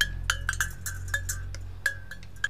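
A small robot character's chatter of quick, irregular electronic clicks, many ending in a brief high ping, over a low steady hum.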